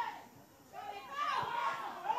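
Scattered shouts and cries from players and a small crowd at an open-air football match, dipping briefly and then rising again about a second in as play goes on at the goalmouth.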